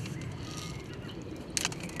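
Faint handling noise from a bait catapult being loaded with pellets: light rustles and clicks over low outdoor background noise, with one short sharp rustle near the end.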